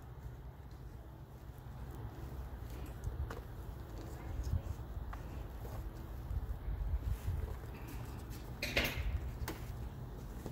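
Steady low rumble, typical of wind on the microphone, with faint rustles and light taps as kalanchoe cuttings and damp sphagnum moss are handled. A brief hiss comes about nine seconds in.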